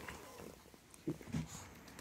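Small dog licking a person's nose close to the microphone: soft, wet licking sounds, with two louder short ones about a second in.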